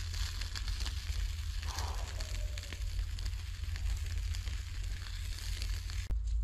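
Field-rat meat sizzling over hot coals in a small earth pit, with many small sharp crackles over a steady hiss.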